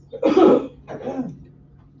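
A person clearing their throat with a cough: two short bursts, the second shorter and falling in pitch.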